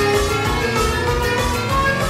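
A DJ mix of electronic dance music with a steady beat and sustained melodic lines.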